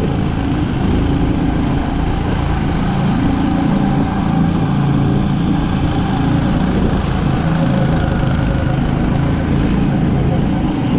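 Go-kart's small engine running steadily under throttle, heard up close from on the kart, with a dense low drone and noise of the kart moving along the track.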